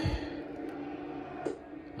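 Low background sound from a television, with a couple of soft clicks.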